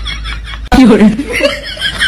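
A person chuckling and laughing, which starts abruptly less than a second in after a quieter moment.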